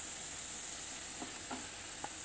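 Onion-and-masala mixture sizzling steadily in a non-stick frying pan as mashed jackfruit is stirred in with a wooden spatula, with a couple of soft spatula strokes a little after a second in.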